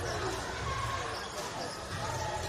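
A basketball being dribbled on a hardwood court, with arena crowd murmur and voices.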